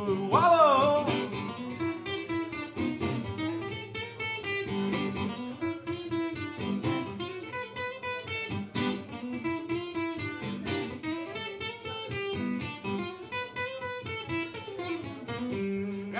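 Acoustic guitar strummed steadily in a rhythmic instrumental break of a country-style song. A short sung note bends in pitch about half a second in.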